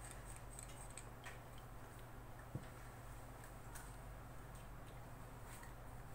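Faint ticks and small clicks from a dynamic microphone's metal grille being unscrewed from its body, with one sharper click about two and a half seconds in, over a low steady hum.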